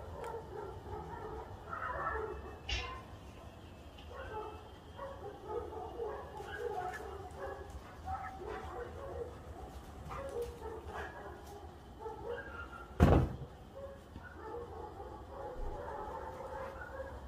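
Dogs barking over and over, in many short calls. A single sharp knock about thirteen seconds in is the loudest sound.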